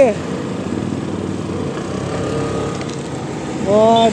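Steady rumble of a motorcycle engine idling, mixed with passing road traffic.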